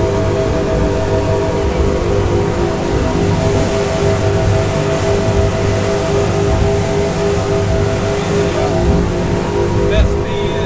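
Twin outboard engines running steadily at high speed, about 50 mph, their drone holding one even pitch over a rushing of wind and water.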